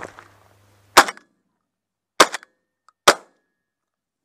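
Three shotgun shots from a semi-automatic shotgun. The first comes about a second in and the other two follow roughly a second apart, each a sharp crack that dies away quickly.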